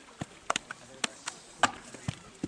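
Hard knocks and clacks from handling bricks at a brickworks, about six sharp strikes in two seconds at an uneven pace over a steady background of work noise.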